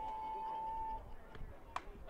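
Bat striking a pitched softball: one sharp crack near the end, putting the ball up in the air as a fly ball. Before it, faint spectator voices and a single held high note lasting about a second.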